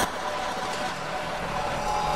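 Hard techno in a quieter breakdown: sustained synth tones over a noisy, engine-like wash, with no steady kick drum.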